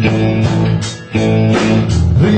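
Small live band playing a blues, with electric guitars over drums and a short dip in loudness about a second in.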